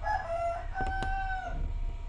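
A rooster crowing: one call in two parts, the second part held on a steady pitch and breaking off about a second and a half in. A single light click comes near the middle.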